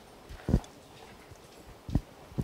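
Two dull thumps, about a second and a half apart, from a handheld microphone being handled as it is passed from one person to another.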